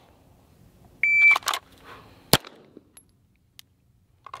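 A shot timer beeps once, then there are short clicks as the pistol is drawn from the holster. About 1.3 seconds after the beep comes a single shot from an Atlas Gunworks Athena Tactical 2011 pistol.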